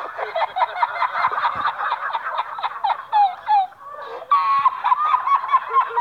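A man laughing hard: a high-pitched laugh in rapid, breathless runs, which eases briefly about four seconds in and then picks up again.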